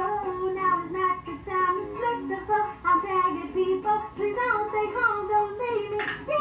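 A woman singing a song, her voice rising and falling in short phrases.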